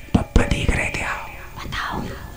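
A woman whispering close into a microphone, breathy and with no clear words. A few sharp low thumps come in the first second.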